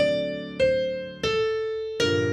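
Piano playing a bebop line over a held D7 chord. The right hand strikes three single notes about 0.6 s apart, each a step lower than the last, starting from the flat 9 of the D7, and each fades before the next.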